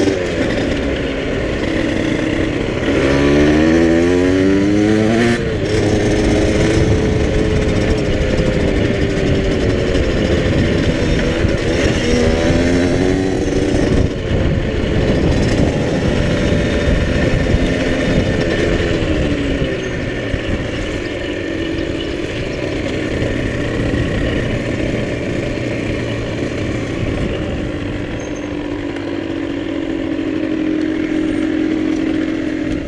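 Motorcycle engine heard from the rider's helmet: it accelerates with a rising pitch about three to five seconds in, runs at varying speed, then eases off and drops to a steady low idle near the end.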